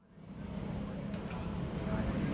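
Outdoor street ambience with a low, steady traffic rumble, fading in from silence right at the start and slowly growing louder.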